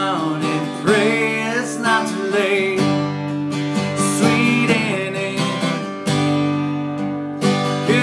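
Acoustic guitar strummed in chords that ring between strokes, with a man singing over it in phrases.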